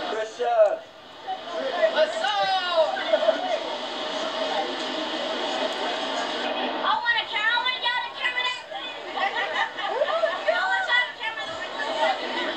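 Indistinct voices of several people talking, over a steady hiss.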